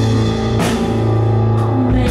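Live band playing an instrumental passage: drum kit with a cymbal crash about half a second in, over a held bass note and sustained chords.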